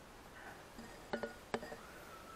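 Two sharp clinks of a small hard object, about half a second apart, each with a brief ring, over faint room tone.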